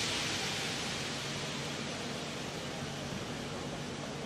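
Compressed air hissing out of a train, loudest at the start and slowly dying away over about four seconds, over the steady low background of a busy station hall.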